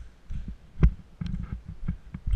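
Footsteps on a concrete floor strewn with debris, picked up by a body-worn action camera as irregular low thumps, about two or three a second, some with a sharp click on top.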